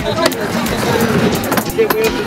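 Skateboard dropping into and rolling on a wooden mini ramp, with sharp clacks of the board, over the chatter of a crowd.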